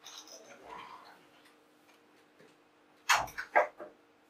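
A whiteboard being wiped with a duster, a soft rubbing in the first second, then two sharp knocks about half a second apart near the end.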